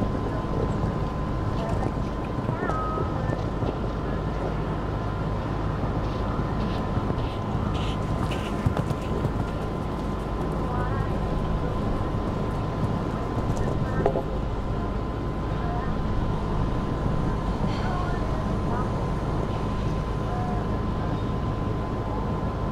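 Steady wind rumble on the microphone over outdoor arena background, with faint distant voices and a constant thin high tone throughout.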